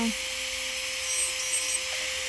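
Electric nail drill (e-file) with a cutter bit running with a steady whine, grinding away gel from the underside of a nail's free edge.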